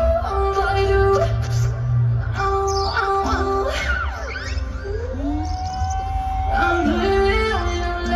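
Live electronic pop concert music over a festival PA, heard from within the crowd: sustained synth chords over a heavy, steady bass, with a gliding female vocal line. About midway a note rises and is held for a second or two.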